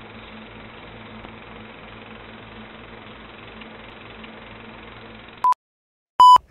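Old film projector sound effect: a steady mechanical whirr and rattle with hiss and hum under the countdown leader, ending with a short high countdown beep about five and a half seconds in, after which the sound cuts off.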